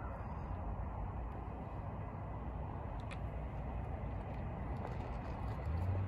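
Steady low rumble of a freight train still some way off and approaching, with a low engine drone coming up near the end.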